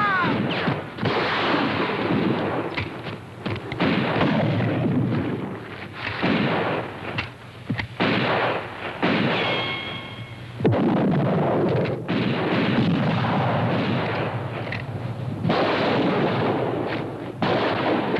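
Gunfight: rifles and revolvers fire repeatedly, many shots overlapping, with two short lulls in the middle.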